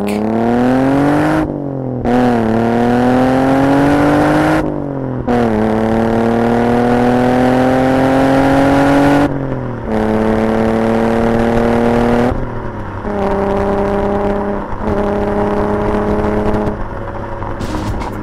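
An Alfa Romeo Spider's 3-litre 24-valve Busso V6 accelerating hard through three gears, its note rising with a short break at each upshift and each pull longer than the last. From about ten seconds in it settles to a steady, lower note, dipping briefly a couple of times.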